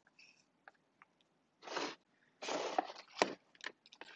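Wooden stir stick scraping thick metallic paste out of a jar and against a plastic tub: two short scrapes a little under two seconds in and just after, then a sharp click and a few small ticks.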